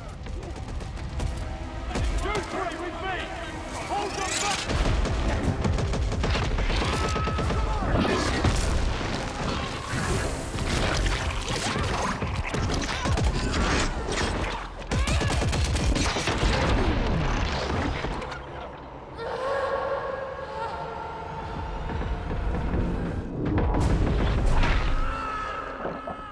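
Action-film battle sound mix: heavy booms and bursts of gunfire over a dramatic music score. About twenty seconds in the impacts ease and held chords of the score come to the fore before the booms return.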